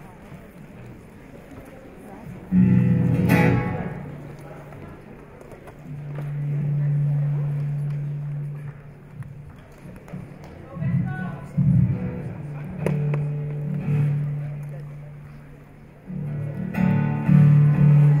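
Acoustic guitar through a theatre PA being tried out before playing: a sharp strum about two and a half seconds in, a low note left ringing, a few single plucked notes, and another strum near the end, with quiet gaps between.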